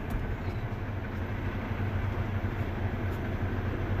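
Steady low engine hum and rumble, as heard from inside a vehicle.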